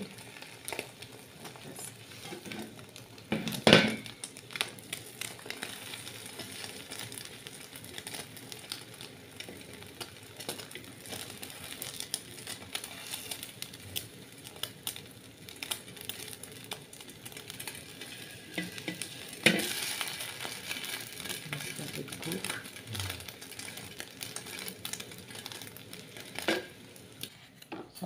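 Egg frying in a hot pan, a steady crackling sizzle, while a spatula scrapes and knocks against the pan as the omelette is rolled and turned. Two louder knocks or scrapes stand out, about four seconds in and again about two-thirds of the way through.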